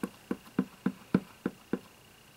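Clear acrylic stamp block tapped repeatedly onto an ink pad to ink a rubber stamp: seven quick, light knocks, about three or four a second, stopping shortly before the end.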